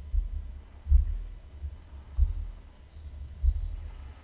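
Deep, low thumps repeating slowly, about one every 1.3 seconds, like a heartbeat or a slow bass-drum beat, leading into closing music.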